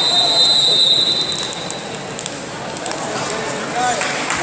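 A whistle blows one long, steady, high note for nearly two seconds, over the shouting and chatter of people in the hall.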